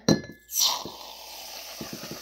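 A short glassy clink, then from about half a second in a long, steady hiss of shaving cream foam being sprayed from an aerosol can into a glass jar.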